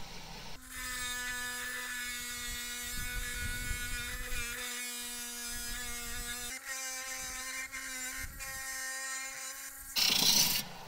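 Wet tile saw cutting through a thunder egg: a steady motor whine with the blade grinding in the stone, starting about half a second in.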